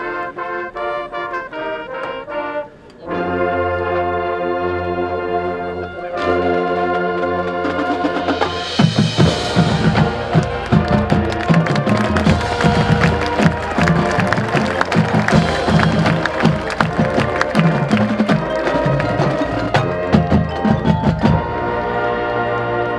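High school marching band playing: the brass runs a quick melody, breaks off briefly about three seconds in, then holds a full chord with the low brass. From about nine seconds the percussion comes in with a crash and rapid drum strokes under the brass to the end.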